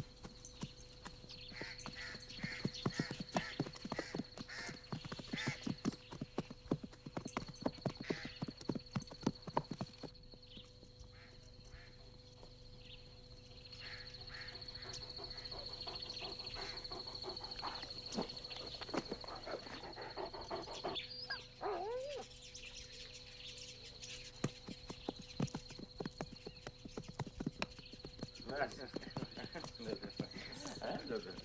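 Horses' hooves clattering over stony ground in quick, dense runs, with a horse neighing briefly about twenty seconds in.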